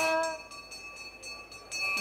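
Devotional singing. A held sung note ends about half a second in, and after a short pause with only faint steady high tones, the next sung phrase begins near the end.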